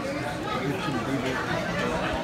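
Indistinct chatter of several people talking at once, a steady murmur of overlapping conversation among restaurant diners.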